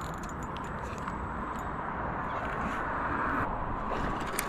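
Spinning reel cranked steadily, a continuous whirring retrieve that stops about three and a half seconds in as a small hooked mackerel is lifted from the water.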